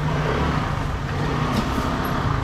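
Busy market din: a steady low hum under an even background noise, with faint clicks and clatter about a second and a half in.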